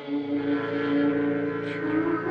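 Slow Indian vocal music: a voice holds a long, slightly wavering note on the word 'naihar' over a steady drone accompaniment.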